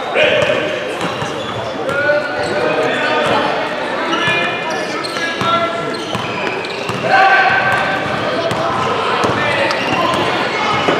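Basketball game in a gym hall: a basketball bouncing on the hardwood court among echoing voices of players and spectators, with no clear words.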